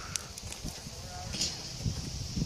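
A pony walking on wood chips, its hoof falls soft and irregular, with a brief rustle about halfway through.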